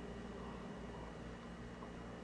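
Faint steady room tone: a low hum and hiss with no distinct events.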